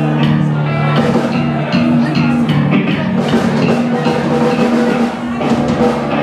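Live rock band playing an instrumental passage: electric guitars and bass holding chords over a steady drum-kit beat, dipping briefly in loudness near the end.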